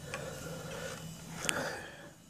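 Faint handling noise as a Dean Cadillac bass guitar is turned over on its padded nylon gig bag: soft rubbing and rustling, with a light click about one and a half seconds in.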